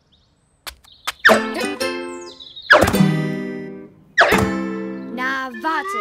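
Cartoon background music on plucked strings: after a brief silence, single notes or chords are struck about every second and a half and left to fade, with a wavering sliding figure near the end.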